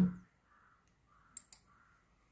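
Two quick computer mouse clicks, a fraction of a second apart, about a second and a half in.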